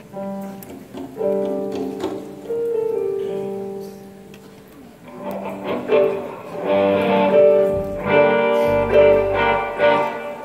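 Live church band playing an instrumental intro: held chords for the first few seconds, then the band fills in and grows louder about halfway through, with drums and bass joining.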